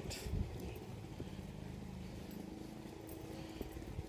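Quiet footsteps and phone-handling noise while walking across a lawn, with a low rumble and a faint steady hum in the second half.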